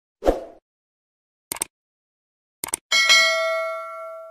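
Subscribe-button animation sound effect: a low thump, then two quick double clicks about a second apart, then a bright notification-bell ding that rings and fades away near the end.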